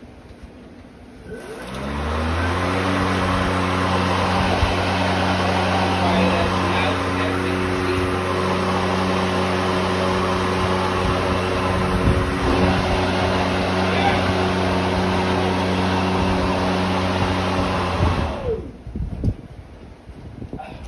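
Ryobi 40-volt brushless cordless lawn mower's motor and 20-inch blade spinning up with a rising whine, then running steadily with a hum and a rush of air for about fifteen seconds before winding down and stopping near the end.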